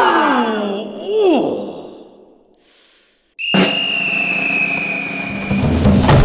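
Men's voices crying out in long groans that fall in pitch and trail away, then a moment of silence, then a sudden steady high tone held for about two seconds.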